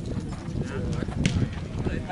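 Footnet ball being kicked and bouncing on the hard court during a rally: a few sharp thuds, the loudest just past halfway, with players' voices in the background.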